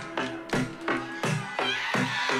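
Live concert recording of a band playing a song, the drums keeping a steady beat of a few hits a second under sustained pitched tones.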